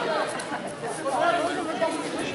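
Overlapping voices of spectators chattering and calling out, carrying in a large sports hall.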